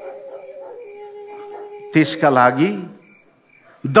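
A man's voice says one short word about halfway through, over faint steady held tones in the background.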